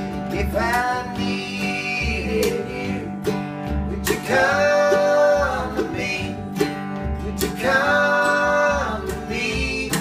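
Acoustic string band playing: strummed acoustic guitars, mandolin and plucked upright bass, with voices singing three long held notes, about a second in, near the middle and around eight seconds in.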